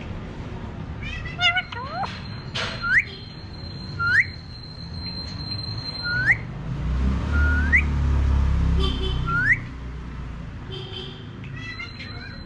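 Alexandrine parakeet giving short upward-sweeping whistles, six in all, spaced a second or two apart, with a little chirpy chatter near the start and the end. A low rumble runs underneath for a couple of seconds in the middle.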